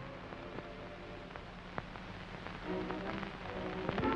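Steady hiss and scattered crackling clicks of an old optical film soundtrack, with one sharper click about halfway through. Faint steady tones come in near the end.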